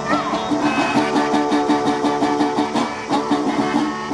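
A guitar played live, blues-country style, driving a fast, steady rhythm of repeated low notes with higher notes over the top.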